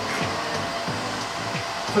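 A steady rush of blowing air, with background music keeping a steady beat under it.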